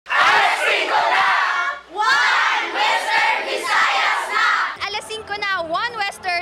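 A large group of people shouting together in unison, two long shouts with a short break between them, followed near the end by a single woman calling out excitedly into a microphone.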